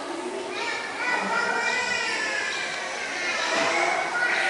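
Several people's voices, including high-pitched children's voices.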